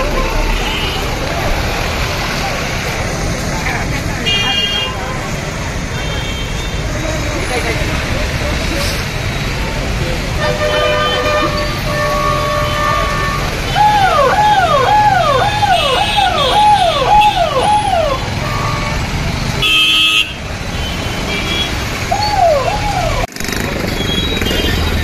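Police jeep siren wailing in quick repeated up-and-down sweeps, about two a second, for roughly four seconds in the middle, with a short burst again near the end, over the shouting of a dense crowd. A vehicle horn sounds a few seconds before the siren starts.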